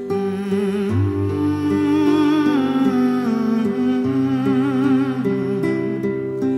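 Slow, gentle background music: a wavering melody with vibrato, which may be a humming voice, over long held low notes.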